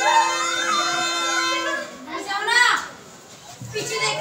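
Music from a reedy wind instrument, a wavering melody over a steady held drone note, which stops a little under two seconds in. Voices, children among them, follow.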